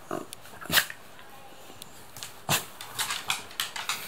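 A dog making a few short sounds while being rubbed, with two sharp sudden sounds, the loudest near the start of the second second. Near the end comes a run of quick clicks as it gets to its feet on the wooden floor.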